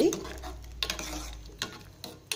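A metal ladle stirring tomato rasam in an aluminium pot, with a few light clinks against the pot.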